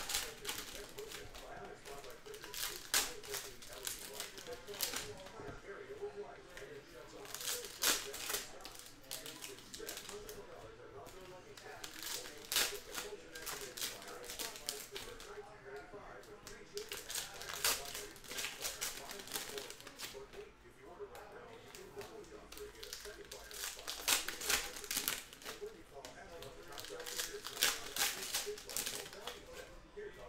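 Foil trading-card packs crinkling and being torn open by hand, with cards handled between them: an irregular run of sharp crinkles and crackles, louder in clusters every few seconds.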